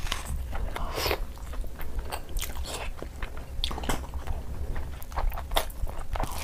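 Close-up eating sounds: a person biting into a raw red onion and chewing, with irregular crisp crunches, the loudest about a second in, along with wetter chewing of curry and rice.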